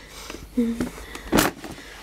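Plastic storage drawer being pushed shut, with one short loud sliding scrape about a second and a half in.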